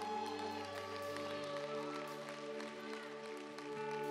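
Live church band playing soft, sustained keyboard chords, the low note changing to a new chord about a second and a half in.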